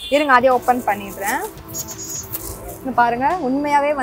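A woman talking, with background music under her voice; her speech pauses briefly in the middle.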